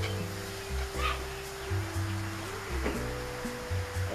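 Background music: sustained synth-like notes that shift pitch slowly over a bass line changing every half second or so.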